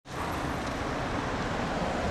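Steady city street traffic: cars driving past on a road, an even wash of tyre and engine noise.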